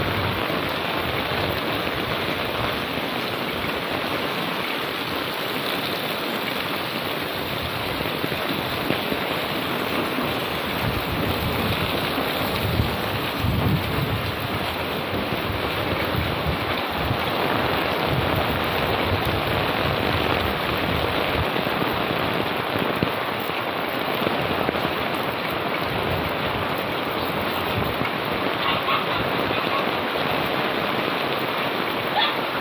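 Heavy rain falling steadily on an umbrella held overhead and on the wet street, a dense, even hiss with some low rumbling about halfway through.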